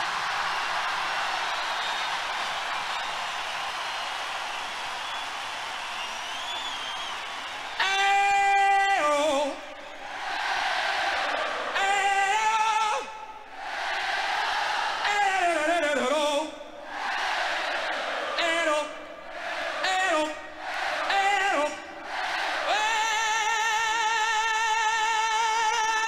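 Live concert recording played from a vinyl record: a crowd cheering, then a male lead singer's unaccompanied vocal calls, a held note followed by short gliding phrases, with the crowd answering in between. Near the end a long held, wavering sung note.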